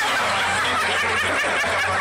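Audience laughing and chuckling, many voices overlapping.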